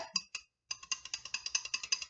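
Wire whisk clicking quickly against the sides of a glass measuring jug, about eight ticks a second, as a thick, lumpy gelatin, glycerin and water mix is stirred. A few clicks, a short pause, then steady whisking.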